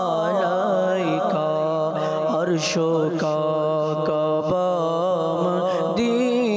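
A man singing a naat, an Islamic devotional song, with no instruments: one continuous ornamented melody line over a steady low drone.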